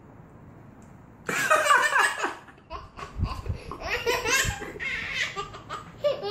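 Hearty laughter breaking out about a second in and going on in repeated bouts.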